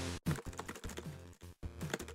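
Video game sounds with rapid clicking of controller buttons: a low buzzing tone, short falling electronic blips and dense clicks. The sound cuts out abruptly a couple of times.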